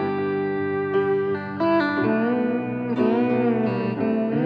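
Live band music led by a lap steel guitar, with piano. The notes are held for the first two seconds, then from about two seconds in they slide and waver in pitch.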